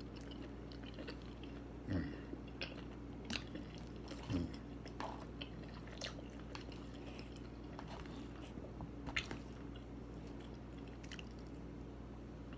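Close-up chewing and mouth sounds of a person eating a soft forkful of food, with scattered small clicks and a few louder smacks, over a steady low hum.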